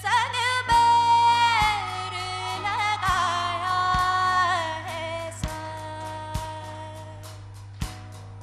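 A woman singing solo into a microphone: a melodic line of long held notes with wavering ornaments and glides, over a steady low drone and light accompaniment beats.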